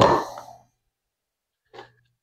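A man's speech trailing off at the start, then near silence with one brief, faint breath near the end.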